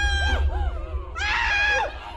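A man screaming in fright: two shrill, held screams, the first breaking off about half a second in and the second starting just after a second in.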